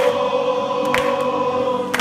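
A group of men singing a Spanish worship song in unison, holding one long note.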